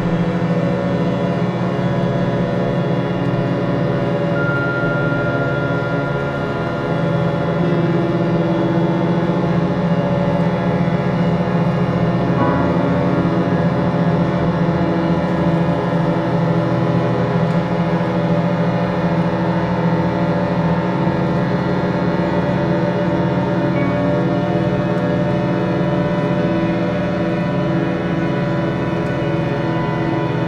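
Experimental drone music from a combined improvising ensemble: many instruments holding long, steady, overlapping tones in a dense low chord, with no pulse or melody. A thin higher tone sounds briefly about four seconds in.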